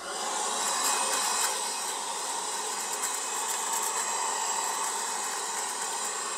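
Cordless handheld vacuum cleaner switched on and running steadily while its nozzle cleans ash and debris out of a brick fireplace's firebox.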